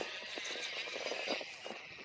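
Sensorless brushless outrunner motor of an RC crawler spinning, a faint, steady, smooth running sound.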